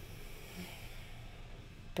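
A slow, audible in-breath close to the microphone: a soft, steady hiss lasting nearly two seconds.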